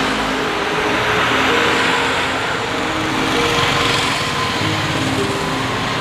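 Steady street traffic: motor vehicle engines running and passing, with held engine tones that shift in pitch now and then.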